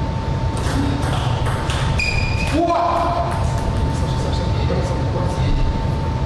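Table tennis rally: a quick series of sharp clicks of the ball striking rackets and table over the first two and a half seconds, ending with a brief high squeak and a short shout as the point is won. A steady hum runs underneath.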